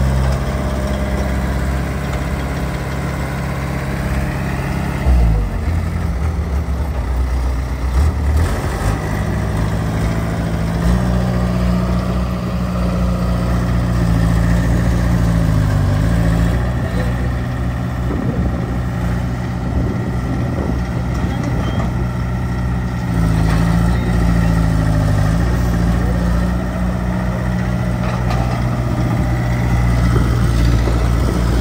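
Diesel engines of hydraulic excavators, one a Caterpillar E70B mired in a muddy trench, running steadily. The engine note dips and recovers several times as the hydraulics take load.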